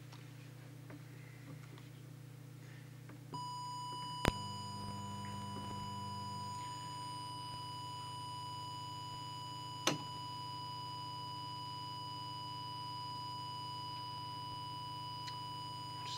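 A steady 1 kHz test tone from an audio oscillator comes on about three seconds in and holds, fed into the CB transmitter to set its audio deviation. Two sharp clicks sound, one just after it starts and one in the middle, over a low electrical hum.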